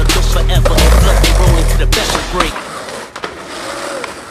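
Skateboard sounds, wheels rolling on pavement with sharp board clacks and knocks, under music with a heavy bass beat that cuts out about two seconds in, leaving the skating on its own.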